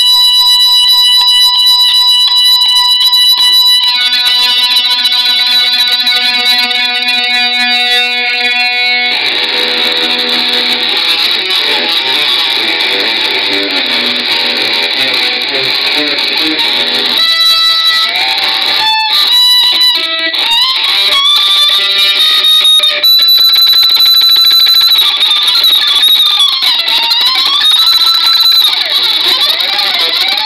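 Metal music led by an electric guitar holding long sustained notes, changing note a few seconds in, then bending and sliding notes in pitch in the second half.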